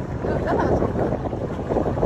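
Steady low rumble of a boat's motor and wind on the microphone, with people's voices talking faintly over it.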